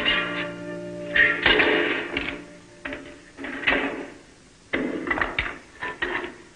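A held music cue ends about a second in. It is followed by several rough strokes, a second or so apart, of a hand tool digging and scraping into dirt and rock.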